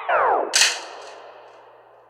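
End of a trap beat: the instrumental's notes drop sharply in pitch, like a tape stop. Then a single sharp crack, about half a second in, rings out in reverb and fades away.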